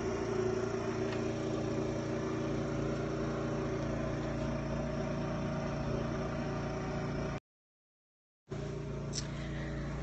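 A pressure washer's engine running with a steady hum and hiss, unchanging throughout. The sound drops out completely for about a second near the end, a gap in the recording, then resumes as before.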